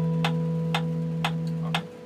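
An acoustic guitar's final chord ringing out and damped just before the end, over a metronome ticking steadily twice a second.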